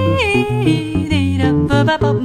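Jazz vocal and guitar duo. A female voice holds notes and slides down between them, without clear words, over an Epiphone Elitist Byrdland archtop electric guitar playing a moving line of low bass notes with chords.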